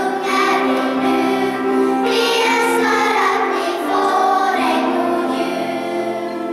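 Children's choir singing together in a church, holding long sustained notes.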